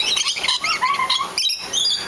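Lories and lorikeets calling: a busy chatter of short, high, overlapping chirps and squeaks, with a brief sharp click about one and a half seconds in.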